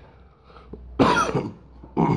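A man coughing into his fist: one loud cough about a second in, and another starting at the very end.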